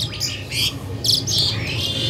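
Birds chirping: a few short, high chirps in the first second or so.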